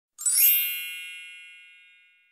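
One bright, high-pitched chime, struck about a quarter second in and ringing out, fading slowly.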